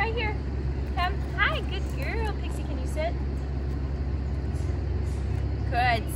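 A woman's short, high-pitched coaxing calls to a dog come several times in the first three seconds and again near the end, over a steady low background rumble.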